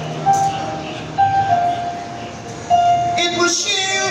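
Woman singing live through a concert PA, holding a series of long sustained notes one after another, a few sliding slightly down in pitch, with a brighter, higher note near the end.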